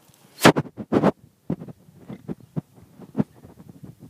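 Two loud thumps about half a second apart near the start, then lighter, irregular knocks and scratches: footfalls and handling noise picked up by a hand-held iPad's microphone while walking.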